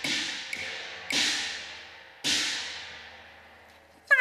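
Four strokes from a Cantonese opera percussion section, each crash ringing out and fading, the loudest two about one and two and a quarter seconds in.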